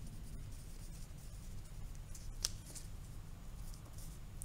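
Pencil writing on a paper workbook page: faint scratching strokes with a small tick a little past halfway through.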